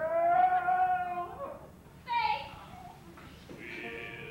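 A woman's voice on stage: one long drawn-out vocal note lasting about a second and a half, then a shorter, higher call about two seconds in, with softer voice sounds near the end.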